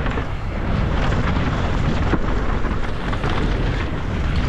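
Wind buffeting a helmet-mounted camera's microphone and knobby tyres rumbling over a dirt trail as a downhill mountain bike descends at speed. A few sharp knocks of the bike over rocks and roots stand out from the steady roar.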